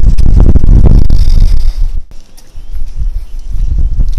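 Low, rumbling wind buffeting on the camera's microphone, mixed with handling knocks as the camera is moved. It is loudest for the first two seconds, dips sharply, then picks up again.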